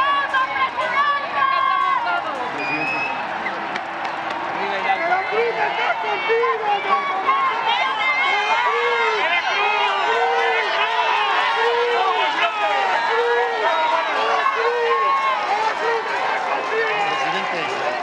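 A large outdoor crowd with many voices calling out at once. From about five seconds in, a chant in unison repeats with a steady beat.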